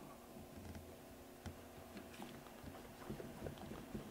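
Faint, scattered clicks and taps of hands handling a plastic water-filter housing and the tubing fittings pushed into it.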